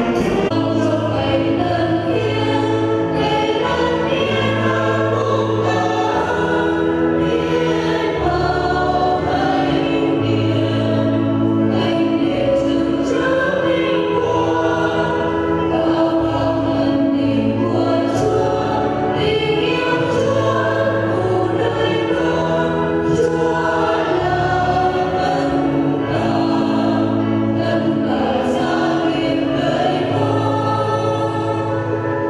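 A choir singing a hymn with instrumental accompaniment, sustained chords over a bass line that moves every second or two.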